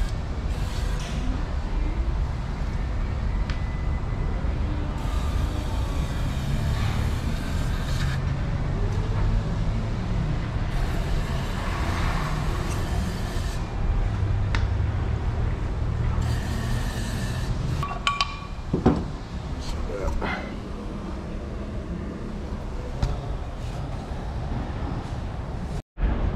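Aerosol cleaner sprayed in three bursts of a few seconds each, hissing over a steady low rumble, with a single sharp knock about two-thirds of the way through.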